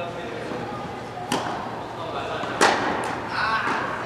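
Tennis ball struck by rackets in a rally, two sharp pops just over a second apart, the second the louder, with a short echo in the large indoor hall. A brief voice calls out near the end.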